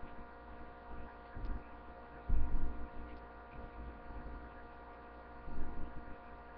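A steady electrical hum made of several fixed tones, with a few dull low thumps on top, the loudest about two and a half seconds in and another near the end.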